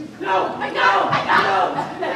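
Several people shouting and yelling at once, starting a moment in.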